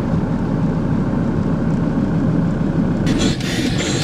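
Car engine idling, heard from inside the cabin as a steady low rumble. About three seconds in, a brighter, higher-pitched layer joins it.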